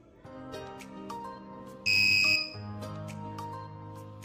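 Active buzzer module giving one high, steady beep of about half a second, about two seconds in: the signal that the touch-dimmed LED has reached its maximum brightness. Instrumental background music plays underneath.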